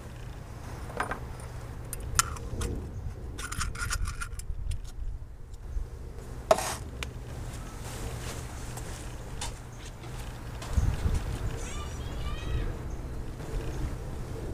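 Scattered clicks and taps of a small metal battery post-and-clamp cleaner being handled and set down, with one sharper clack about six and a half seconds in, over a steady low outdoor rumble. A few faint chirps come near the end.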